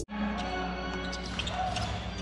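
Basketball arena sound: a steady low crowd murmur with a few short knocks of a ball bouncing on the hardwood court. The electronic intro music cuts off right at the start.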